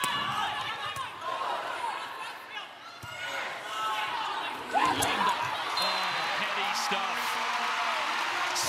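Arena crowd noise during a volleyball rally, with a few sharp smacks of the ball. About five seconds in the crowd gets suddenly louder and stays loud as the point is won.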